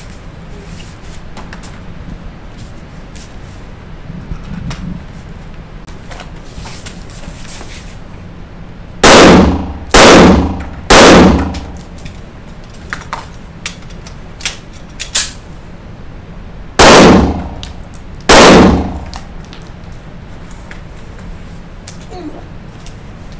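A handgun fires five shots in an indoor range, each with a short echoing tail. Three shots come about a second apart, then after a pause of some six seconds two more come about a second and a half apart. A few faint sharp ticks fall in the gap.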